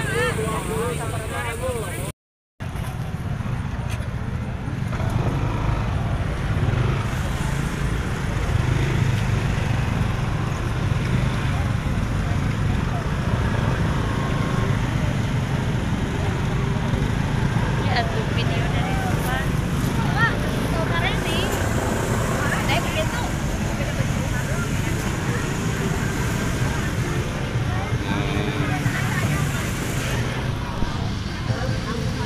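Several motor scooters running slowly in a steady low drone as they creep through a crowded open-air market lane, with a constant murmur of shoppers' voices and now and then a louder call. The sound cuts out for a moment about two seconds in.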